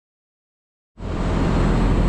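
Silence for about the first second, then steady loud rooftop background noise that starts abruptly. It is a low mechanical hum from a bank of running VRF outdoor units and city traffic, with wind rumble on the microphone.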